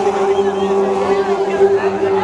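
Makoloane (Basotho initiation graduates) chanting: a group of men's voices holding one long steady low note, with other voices wavering above it.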